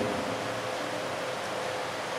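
Steady hiss of background noise, with a faint steady tone running through it.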